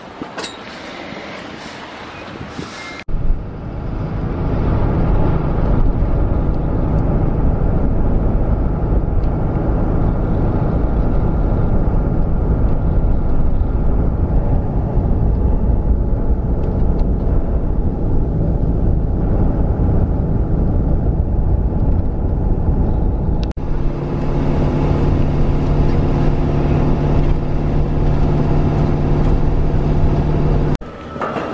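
Loud, steady low rumble of a road vehicle heard from inside the cabin while driving on a snow-covered road. Before it, wind buffets the microphone for the first three seconds. About 23 seconds in, the rumble changes to a steadier engine hum with a low droning tone.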